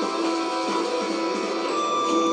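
Background music with guitar from the animated fight episode's soundtrack, with steady held notes.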